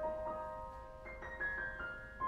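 Solo grand piano playing slow, sustained notes in the upper register. About a second in, a quick falling figure of four or five high notes rings out over the held notes.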